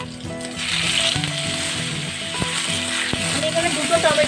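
Fresh tomatoes and green chillies sizzling as they hit hot oil in a kadai of fried baby potatoes, the hiss coming in about half a second in and holding steady. Two sharp knocks of the spatula against the pan in the second half.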